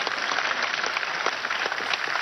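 A large audience applauding: dense, steady clapping.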